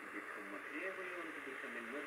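Medium-wave AM broadcast of a voice talking, played through the small speaker of a Radiwow R-108 portable radio tuned to 1575 kHz, with a steady hiss under the voice.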